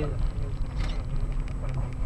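A car's engine and tyres rumbling at low speed, heard from inside the cabin, with a faint steady hum and a brief click just under a second in.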